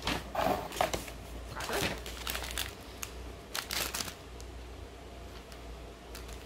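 Paper and plastic snack packaging crinkling and rustling as hands rummage in a cardboard box, in a few short bursts over the first four seconds, then quieter.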